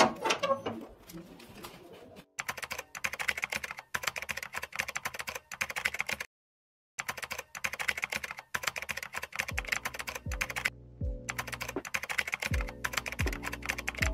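A metal door bolt clanks at the start, then someone crunches snack chips in quick, rapid bites, in short stretches broken by sudden gaps. From about two-thirds of the way in, deep thumps that fall in pitch come in under the crunching.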